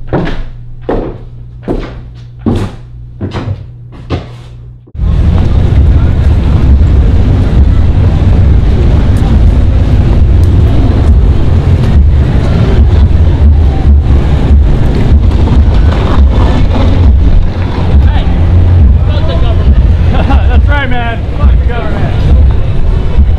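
A few evenly spaced knocks, about two a second, over a low hum. Then a sudden change to loud street noise: passing traffic and a heavy rumble of wind on the microphone, with voices mixed in.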